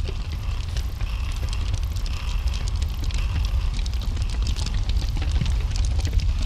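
Electric fans running: a steady low rumble of moving air with a dense crackle over it.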